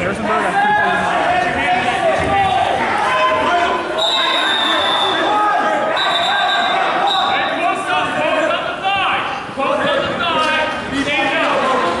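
Many voices talking at once, echoing in a gymnasium, with some thumps. Two steady high tones, each a little over a second long, sound about a third of the way in and again about halfway.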